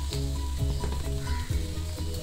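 Cut broad beans and grated coconut sizzling in a frying pan on the stove, with background music playing a melody of held notes.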